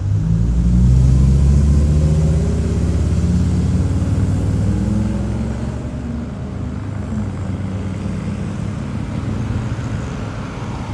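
The 2019 Audi RS 5's twin-turbocharged 2.9-litre V6 running: its note jumps up sharply at the start and stays loud for a few seconds, then eases down to a steadier, quieter idle.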